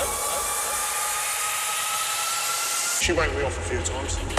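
Drum and bass mix transition: a loud white-noise hiss with one slowly rising tone builds for about three seconds with the bass cut out. Then the bass and beat come back in with a vocal.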